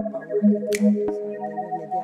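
Short musical transition sting for a TV news programme: a sustained synth chord over a low note, with a few sharp clicking hits, the loudest about three-quarters of a second in.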